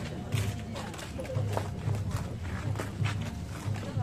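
Festival hayashi drums beating a steady rhythm, about two strokes a second, with sharp higher strikes among them, over the voices of a crowd.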